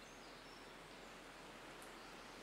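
Near silence: a faint steady hiss with a low hum underneath, in a pause between spoken lines.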